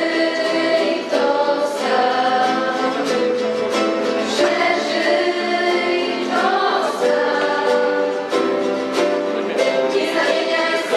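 A group of girls singing a song together, accompanied by strummed acoustic guitars.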